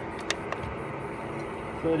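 Steady background hiss, with two short clicks about a third and a half second in as a button on a PWM solar charge controller is pressed to change its display.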